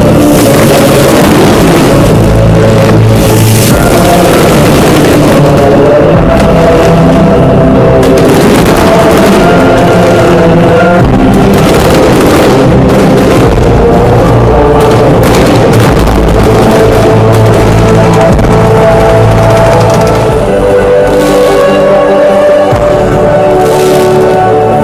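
Loud music playing throughout, with the booms and crackle of fireworks going off underneath it.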